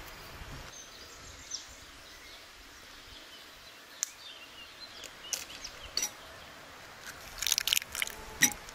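Outdoor background ambience with faint bird chirps, broken by a few light clicks and taps of hands and utensils at a work table, with a quick cluster of sharp taps near the end.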